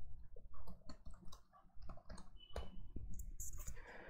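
Faint, scattered clicks of computer keyboard keys as a short shell command is typed.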